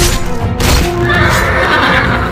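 Film score music playing, with a horse neighing from about a second in.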